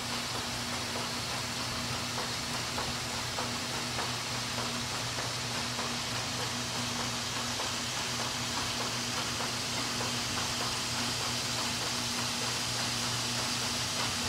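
Steady machinery noise of a copper-concentrate filtration plant: electric motors driving the disc filters give a low, steady hum under an even hiss.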